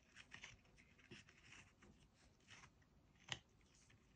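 Faint handling sounds: light scraping and rustling, with one sharp click a little over three seconds in.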